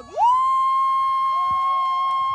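A spectator's long, high-pitched yell cheering a finishing runner. The voice swoops up just after a short break about a fifth of a second in and then holds one steady note.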